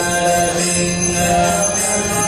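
Devotional mantra music: a steady held drone under a chanted melody, with small bells jingling about twice a second.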